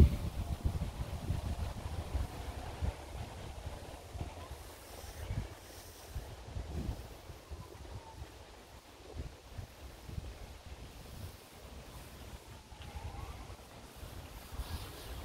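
Wind buffeting the microphone in uneven low gusts, strongest at the very start and then easing to a steady rumble.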